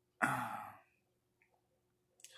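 A man's short sigh: a breathy exhale, loud at first and fading over about half a second.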